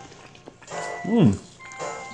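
A person hums an appreciative "mmh" while tasting chocolate fondue, the pitch rising then falling, about a second in. Background music plays throughout.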